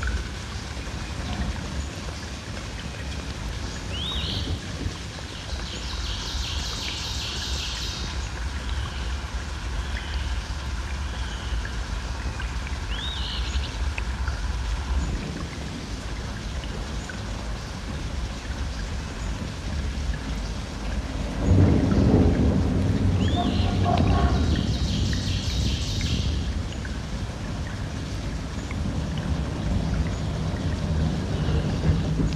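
Field-recording soundscape: a steady low rumble, with short rising high chirps about every ten seconds and a louder swell of rumble about two-thirds of the way through.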